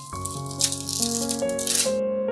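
Thin plastic stencil film crinkling as it is peeled off a painted wood slice, stopping just before the end, over background piano music.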